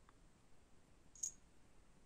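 Near silence: room tone, broken by a single short, sharp click about a second in.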